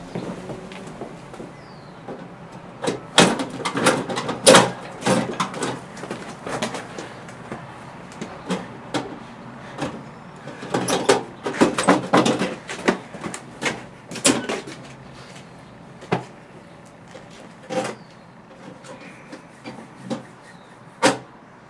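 Irregular clicks, knocks and rattles of hands working a small box mounted on a house wall. The busiest stretches come about three to five seconds in and again around ten to fourteen seconds, with a few single knocks near the end.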